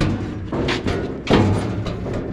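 Hollow knocks from the sheet-metal waste hopper of an H2200 nut harvester as it is shifted by hand to set its gap, three knocks in quick succession.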